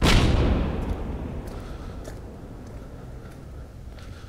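An explosion-like sound effect: a sudden boom that fades away over two to three seconds.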